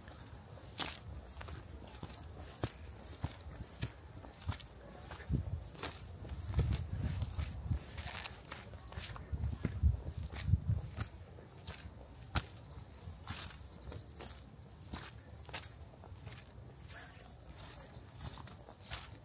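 Footsteps on dry fallen leaves and twigs: irregular sharp crackles, about one or two a second. A low rumble swells in the middle.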